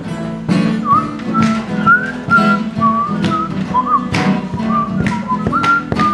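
Acoustic guitar strummed steadily, about two strokes a second, with a whistled tune sliding between notes over it from about a second in.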